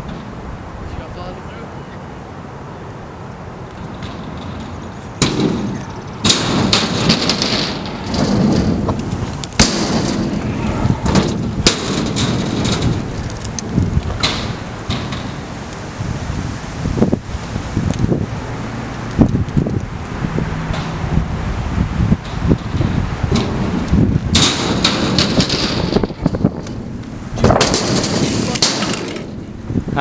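Stunt scooter wheels rolling over concrete ramps, with many sharp clacks and knocks from landings and the deck hitting the surface, over wind on the microphone.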